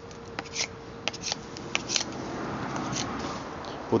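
Handling noise: scattered light clicks and soft rustling as a kukri knife is held and moved close to the microphone, with the rustle swelling a little in the second half.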